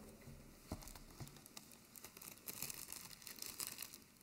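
Faint rustling of paper with a few light clicks picked up by the lectern microphone: two or three small clicks in the first second or so, then denser rustling in the second half.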